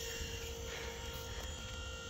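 A roll-off trailer's electric-over-hydraulic pump running steadily, heard as a faint, even hum over a low rumble, as it is worked by a wireless remote from far away.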